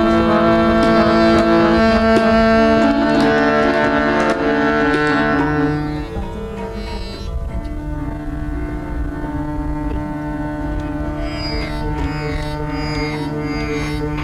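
Harmonium playing held notes and chords, which change every few seconds and soften about halfway through. In the last few seconds, plucked strings join in with quick repeated strokes.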